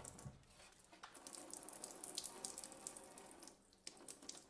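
Faint, steady spray of filtered water from a LifeSaver Jerrycan's handheld shower attachment, running on its continuous-flow setting and splashing into a stainless-steel sink.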